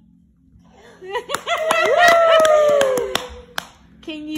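Hands clapping quickly together with a long drawn-out cheer from more than one voice, starting about a second in and lasting about two seconds; one or two last claps follow near the end.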